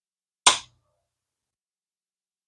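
A single sharp metallic click about half a second in, as parts of an ABU Garcia Ambassadeur 5000 baitcasting reel are snapped together during reassembly.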